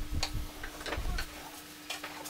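A few light wooden knocks and clicks with low thumps, from wood being handled on a wooden workbench, in the first second or so.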